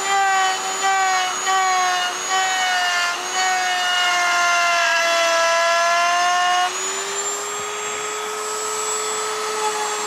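Small plunge router whining at high speed while its thin straight bit cuts a shallow round recess into wood for a coin inlay. The level pulses as the bit is worked into the cut, the pitch sags under load, and about two-thirds of the way in the tone shifts higher and slightly quieter as the cutting eases.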